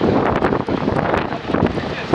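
Gusty wind buffeting the microphone, rumbling loudly and unevenly.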